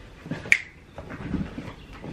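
A pet playing with a toy: one sharp click about half a second in, with faint knocking around it.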